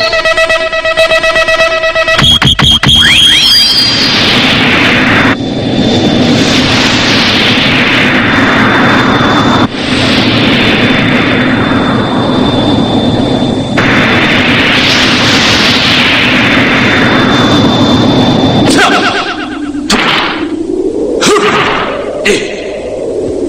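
Science-fiction flight sound effects for Ultra warriors flying through space. Three long whooshes, each falling in pitch, come about four to five seconds apart over a steady high tone and a low drone. They are preceded by a brief run of electronic beeps and zaps, and near the end a rising glide takes over.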